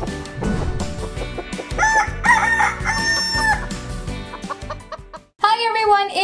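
Rooster crowing and hen clucking sound effects over upbeat intro music: a long, held crow about three seconds in, followed by shorter clucks. A woman's voice begins near the end.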